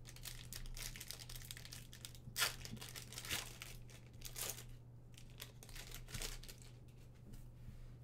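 Wrapper of a 2020 Panini Contenders Draft Picks football card pack crinkling and tearing open in the hands, a run of irregular crackles with the loudest tears about two and a half and three and a half seconds in. A steady low hum runs underneath.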